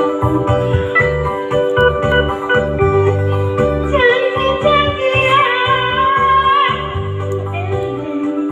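A woman singing into a microphone over electronic keyboard backing with a pulsing bass beat. She holds one long wavering note from about halfway through until near the end.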